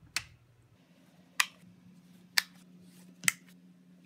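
A powered-on Fender Super Champ X2 tube guitar amp puts out a steady low hum that begins less than a second in. Over it come four sharp clicks about a second apart.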